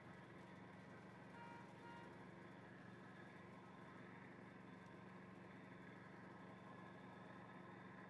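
Near silence: a faint, steady low hum under quiet background noise.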